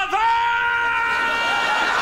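A cartoon boy's voice holding one long, loud cry at a single steady pitch.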